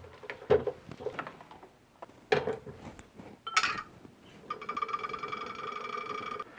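A few light knocks and clicks of glassware and equipment being handled, then, about four and a half seconds in, a magnetic stirrer's motor starting up with a steady whine of several tones.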